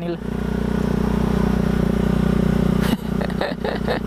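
Sport motorcycle engine running at a steady cruise, heard from the rider's position with wind rushing over the microphone. The sound breaks briefly near the end.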